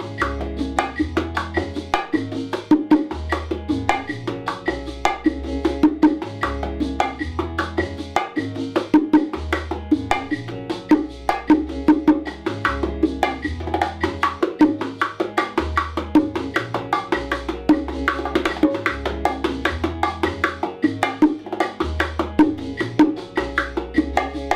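Bongo drums played by hand in a continuous martillo ("hammer") groove with added licks and variations: a dense, even run of sharp slaps and open tones on the two heads. Beneath it runs a steady clave click and a repeating low bass line.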